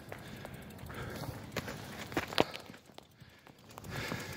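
Footsteps on a dirt hiking trail: a string of irregular scuffs and steps, one sharper step a little past halfway.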